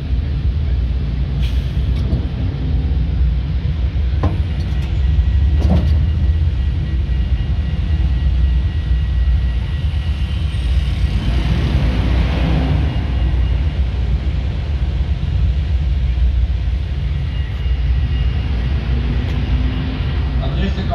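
Steady low rumble of a trackless tourist road-train riding through city traffic, with a few short knocks early on. About eleven seconds in, a large vehicle close alongside swells up and fades away.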